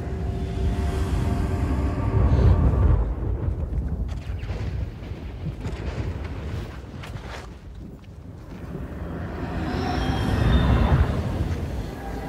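Film soundtrack: sustained, sombre score notes held over a deep low rumble. It swells, dips to its quietest at about eight seconds, then builds again near the end.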